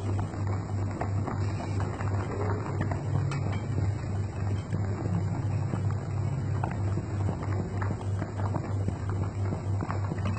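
Pot of soup at a rolling boil, bubbling and popping steadily with many small crackles. A low hum pulses rapidly underneath.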